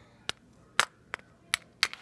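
Plastic Littlest Pet Shop toy figure tapped along a hard surface by hand, giving about six short, sharp clicks at uneven intervals.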